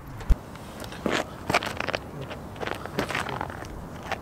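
Handling noise from a camera being set down: a sharp thump about a third of a second in, followed by scattered rustling, crackling and scraping as it is shifted into position.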